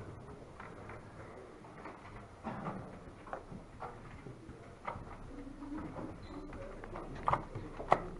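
Tournament-hall room sound: a low murmur with scattered small clicks and knocks, and two sharper knocks near the end.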